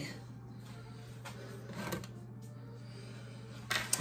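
Quiet kitchen room tone with a steady low hum, a faint soft knock about two seconds in, and a short click just before the end.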